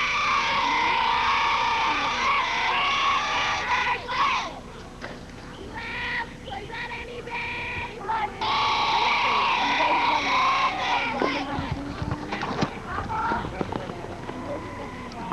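Children's voices cheering in long, drawn-out high-pitched calls, in two stretches of a few seconds each, with shorter shouts between.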